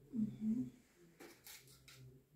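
A brief low murmur of a voice, then a few quick light clicks and rustles as a plastic case is handled with gloved hands.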